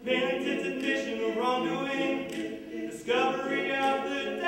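Male vocal quartet singing a cappella in close harmony, holding sustained chords, with a short dip and a fresh chord coming in about three seconds in.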